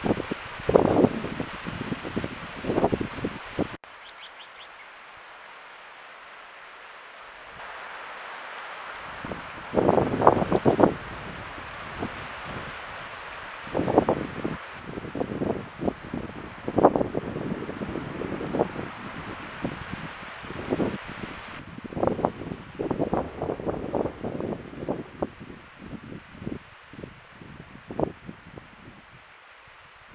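Irregular rustling and crackling in dry grass close to a trail camera's microphone, over a steady hiss. The background hiss changes abruptly several times as one camera clip cuts to the next.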